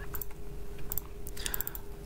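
A few light, scattered clicks of a computer keyboard and mouse, several close together near the end, over a faint steady hum.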